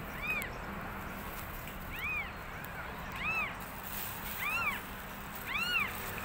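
Newborn kitten mewing: five short, high cries about a second apart, each rising and falling in pitch.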